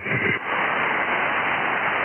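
Steady hiss of HF band noise from the Icom IC-7300's speaker in single-sideband receive, heard in the gap between overs once the other station unkeys. It follows the tail of a voice fading out.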